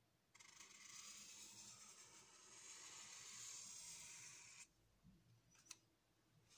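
Thick Staedtler permanent marker drawn in one long stroke across paper: a soft, even scratchy hiss for about four seconds that starts and stops abruptly, then a single click near the end.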